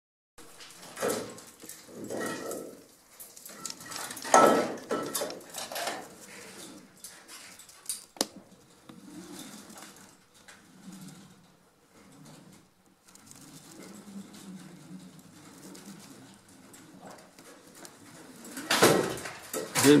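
Metal climbing hardware clinking and rattling on the rope traverse, echoing in the cave, in irregular bursts that are loudest about four seconds in and again near the end.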